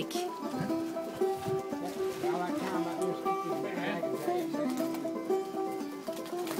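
A small plucked string instrument being played, picking out a tune in a steady rhythm.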